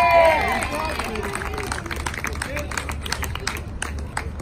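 A drawn-out whooping cheer in the first second, followed by scattered hand clapping from a small group.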